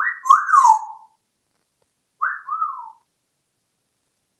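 African grey parrot whistling two short phrases about two seconds apart, each sliding up and then down in pitch; the first is louder and has a hissy edge.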